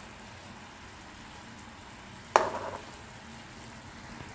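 Sugar syrup boiling in a pan with a steady, faint bubbling, being cooked down toward one-thread consistency. A little past halfway, a single sharp knock sounds, as of the steel spoon striking the pan.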